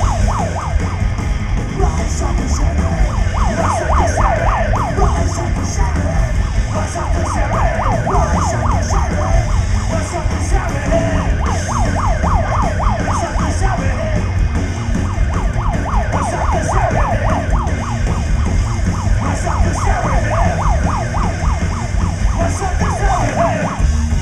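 Live psychobilly band playing an instrumental break: upright bass and drums under a fast, wavering lead line of short notes that rise and fall several times a second.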